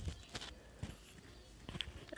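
A few faint, scattered metallic knocks and clicks from a small aluminium pressure cooker and its lid being handled and fitted.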